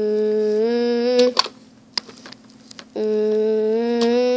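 A person humming two long held notes, each stepping up a little in pitch partway through, like mock suspense music. A few light clicks fall in the gap between the notes.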